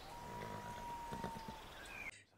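Faint sounds of horses standing with their riders, with a thin steady tone that lasts about a second and a half and falls slightly in pitch.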